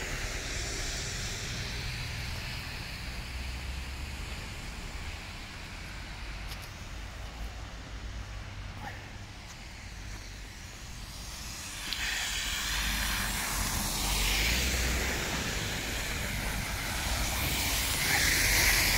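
Low, steady street noise at first. About twelve seconds in, the hiss of a vehicle's tyres on a wet road rises as a van approaches.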